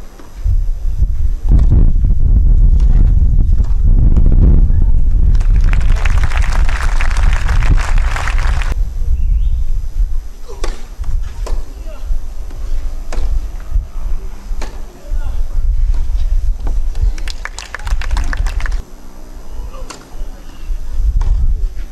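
Tennis crowd applauding and cheering for about three seconds after a point, over a heavy low rumble. Then a rally on a clay court: the sharp pops of racket strikes and ball bounces about once a second, ending in a short burst of claps.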